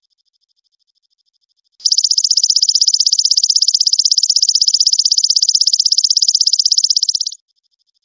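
Fast, evenly pulsed, high-pitched trill of a stridulating insect. It starts loud about two seconds in and stops abruptly about a second before the end, over a faint steady trill of the same kind.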